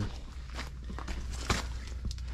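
Footsteps as a person walks up and crouches, with small scuffs and one sharper knock about one and a half seconds in, over a low steady hum.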